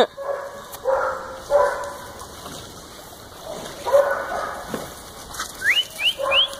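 Dogs barking in short single barks, three in the first second and a half and another about four seconds in, from a group of dogs at play.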